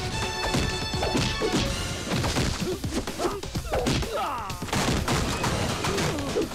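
Film background score giving way, about two seconds in, to fight sound effects: a rapid run of punch whacks and crashing impacts over the music.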